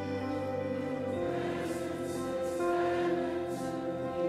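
Slow live worship song: held keyboard chords under singing voices, the chord shifting about a second in.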